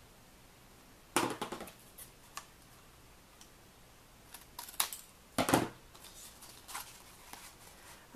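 Scissors snipping through black cardstock to trim a corner, with two main cuts about four seconds apart and a few smaller clicks and rustles of paper and the metal die between them.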